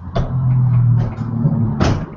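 Headset microphone being handled and put on: a steady low buzz with scraping and several sharp clicks.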